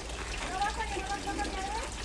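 A faint, distant, high-pitched voice over a steady low hum of background noise.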